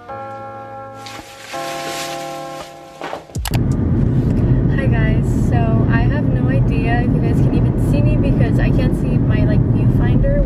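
Background music with steady chords for the first few seconds, then a sudden cut to a loud, steady low rumble of road and engine noise inside a moving car's cabin, with a woman talking over it.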